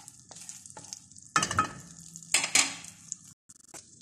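Melted butter sizzling in a nonstick pan while a wooden spatula stirs it, with two louder scrapes of the spatula about a second and a half and two and a half seconds in.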